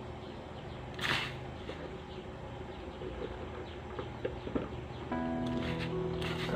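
Water boiling in a small steel pot on a gas stove, with a short splashy burst about a second in as pumpkin pieces go into the pot. Held background music tones come in near the end.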